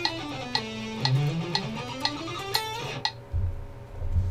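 Electric guitar playing a fast scale sequence in sixteenth notes, running down in pitch and then back up, over a metronome clicking twice a second (120 bpm). The playing stops about three seconds in, followed by a couple of low thumps.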